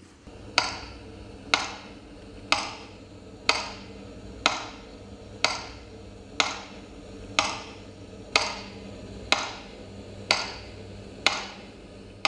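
A metronome ticking slowly and evenly, about one beat a second, each tick ringing briefly, over a steady low hum: the metronome beat of a minute of silence.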